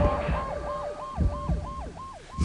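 A siren sounding in quick repeated sweeps, about three a second, each dropping in pitch.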